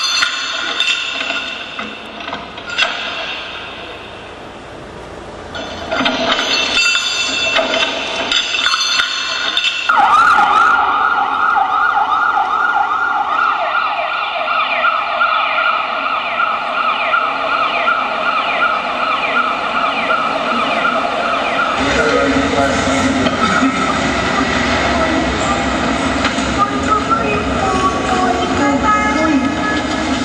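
Pitched clattering sounds for the first several seconds. Then, about a third of the way in, a loud, siren-like wail sets in and holds at one pitch, wavering quickly. A low rumble joins it about two-thirds of the way through.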